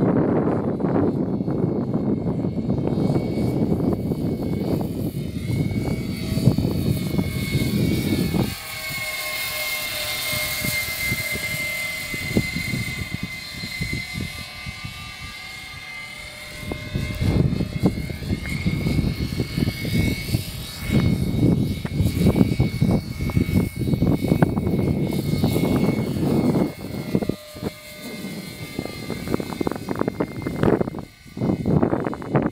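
Radio-controlled scale CV-22 Osprey tiltrotor model on a Rotormast rotor system, flying overhead: a steady high whine from its rotors, rising and falling slowly in pitch as it passes. Low wind rumble on the microphone covers it through the first third and again through much of the second half.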